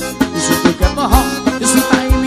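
Forró band music led by accordion over a steady kick-drum beat.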